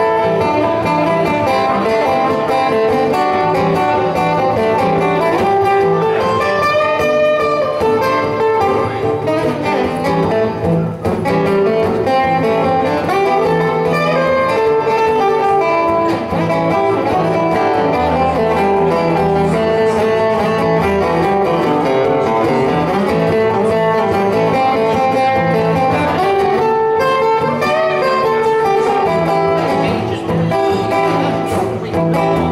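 Two acoustic guitars played together live: an instrumental passage with no singing.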